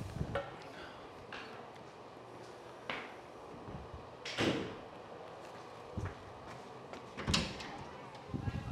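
A few separate knocks and bumps, like a door or cupboard being handled, over a steady low room hum; the loudest comes a little before the middle, the others near the start of the second half and near the end.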